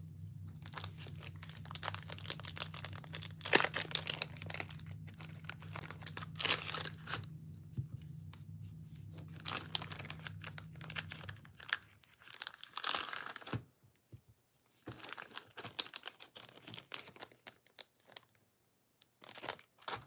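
Plastic wrapping being crinkled and torn in irregular bursts, loudest about three and a half and six and a half seconds in. A steady low hum underneath stops a little past halfway.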